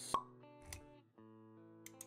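Intro music with held plucked-string notes and a short pop sound effect right at the start, followed by a second, lower knock a little after half a second in.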